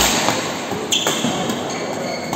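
Badminton racket strikes on the shuttlecock during a rally: a sharp hit right at the start and another about a second in, the second followed by a brief high ring.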